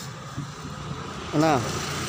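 Steady outdoor background noise in a pause in a man's narration, which resumes with a single word about one and a half seconds in.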